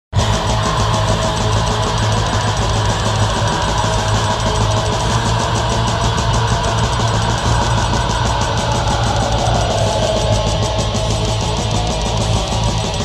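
Heavy metal kicks in abruptly out of silence, at full volume from the first beat: distorted electric guitars, bass and fast, driving drums, with no vocals.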